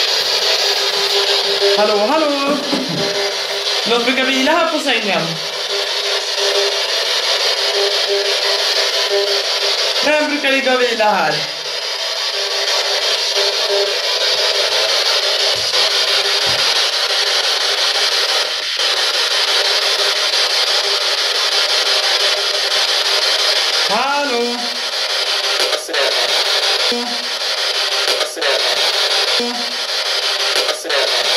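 Steady, loud radio static from a ghost-hunting spirit box, with short snatches of voice-like sound that glide downward in pitch, heard four times: around two, four, ten and twenty-four seconds in.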